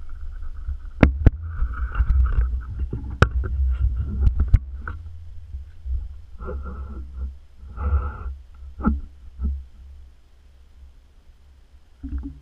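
Handling noise from a metal-framed rig, heard through a GoPro Hero3's waterproof housing: a steady low rumble with several sharp knocks and clunks in the first half, scuffling bursts around the middle, and quieter near the end.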